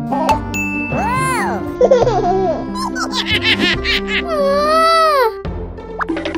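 Cartoon background music with a steady beat under wordless cartoon voice effects: squeaky calls that rise and fall in pitch, a quick giggle-like run about three seconds in, and a long wavering cry that drops in pitch near the end.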